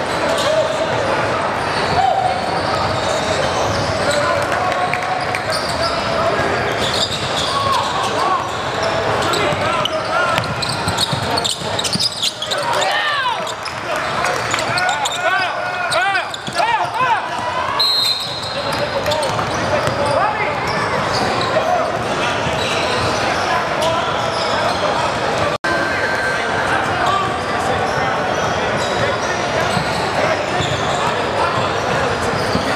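Live indoor basketball gym sound: many spectators and players talking and shouting, echoing in a large hall, with a basketball bouncing on the hardwood court. The shouting is busiest around the middle, and the sound drops out for an instant about three-quarters of the way through.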